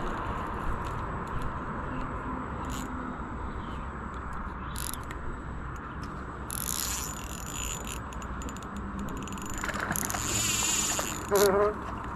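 Spinning reel clicking and buzzing, its drag backed off so line slips out, with longer buzzing runs in the second half and the loudest burst near the end.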